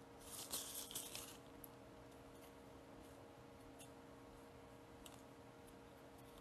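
Near silence over a faint steady hum, broken just after the start by a brief scratchy rustle lasting about a second: gloved fingertips rubbing an adhesive stencil down onto a nail tip. A few faint ticks follow.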